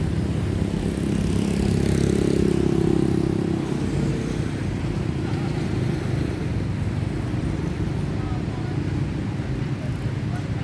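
Motor traffic on a street, a steady low engine rumble, with one vehicle passing louder about one to three seconds in.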